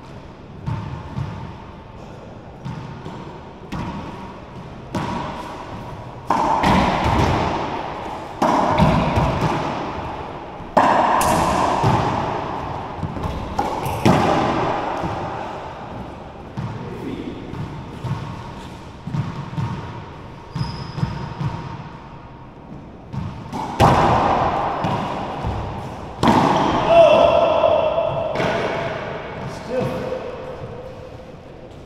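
Racquetball being played: the ball is struck by racquets and rebounds off the court walls in sharp, echoing smacks. The smacks come in two loud runs of rallying, one starting about six seconds in and one about twenty-four seconds in, with quieter knocks between.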